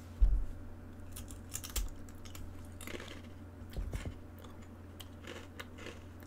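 Close-up handling sounds: a low thump just after the start, then soft scattered clicks and crunches, with more low knocks about two and four seconds in.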